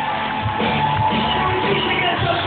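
Rock band playing live through a club PA, with keyboard, electric guitars and drums, recorded from within the crowd. The recording sounds dull, with its treble cut off.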